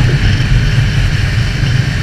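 Honda CB650F inline-four engine on its stock exhaust, running steadily at highway speed, with wind noise on the microphone.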